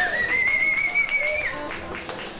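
A single long, high whistle, held for about a second and a half with a slight waver after a quick upward slide at the start, then cut off.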